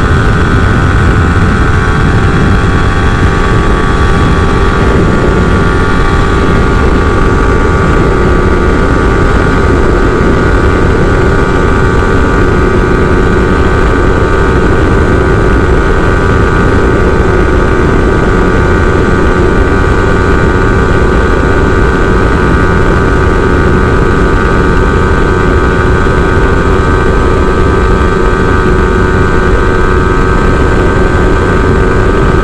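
Yamaha R-series sport bike's engine held at high revs at full throttle near top speed, moving from 5th into 6th gear, its pitch steady while the speed creeps up, under loud wind rush.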